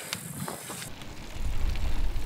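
Mountain bike riding over a rough dirt track, with tyre noise and short rattles and knocks. Wind rumbles on the microphone in the second half.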